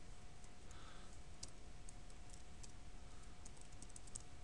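Computer keyboard typing: a few short bursts of faint, scattered key clicks, more of them in the second half, over a faint steady hum and hiss.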